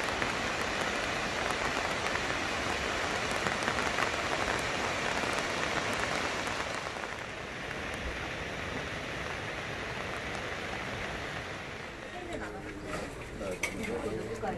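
Heavy rain falling steadily as a dense hiss, with individual drops ticking close by; the brightest part of the sound fades about halfway through. Near the end, faint voices and a few sharp clicks come in.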